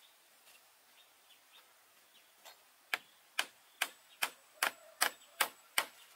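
Claw hammer driving a nail through a thick wooden plank into a wooden-pole gate frame. There are eight evenly spaced blows, about two and a half a second, starting about three seconds in.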